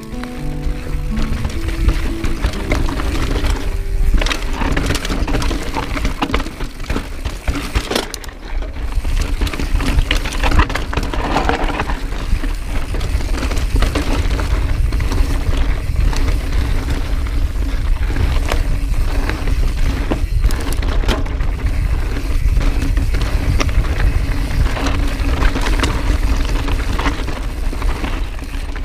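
Mountain bike riding down a rocky, loose dirt trail: a steady low rumble with constant rattling and knocks as the tyres and bike go over stones.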